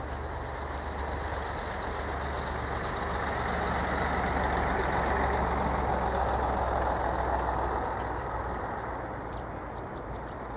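A motor vehicle passing: its road noise swells to a peak about halfway through and then fades away. Faint high chirps of house sparrows sound over it.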